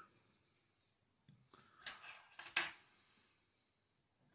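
Quiet room with a few faint, short rustles and ticks about halfway through, from hands working thread and floss on a hook held in a fly-tying vise.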